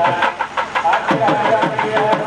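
South Indian temple procession music: nadaswaram reed pipes hold long, wavering notes over rapid thavil drum strokes.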